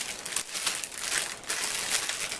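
Clear plastic packaging crinkling and rustling as it is handled: a dense, continuous run of small crackles.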